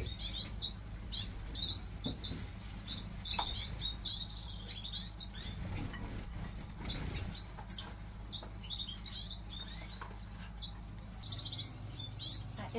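Small aviary birds chirping: many short, high calls overlapping throughout, with a few faint knocks as food is set out on a plate.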